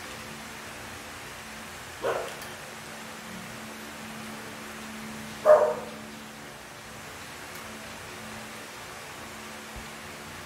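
A dog barks twice, once about two seconds in and again, louder, past the middle, over a steady low hum.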